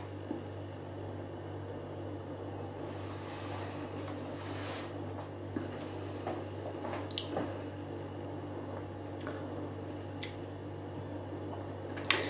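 Quiet sounds of a man sipping and tasting beer: soft mouth and swallowing noises with a few small wet clicks, over a steady low hum.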